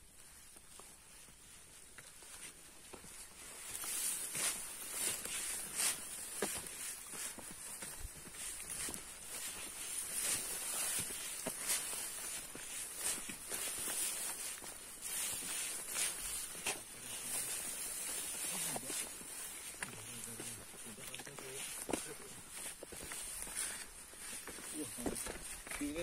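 Footsteps of a hiker walking a dirt mountain trail through grass and ferns, a run of scattered clicks and crunches, over a steady high hiss that comes in about four seconds in.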